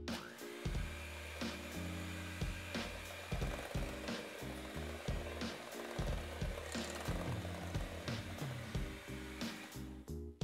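Electric hand mixer running, its beaters churning flour into a wet cake batter in a glass bowl, over background music. The motor's whine rises as it starts up at the very beginning, holds steady, and stops near the end.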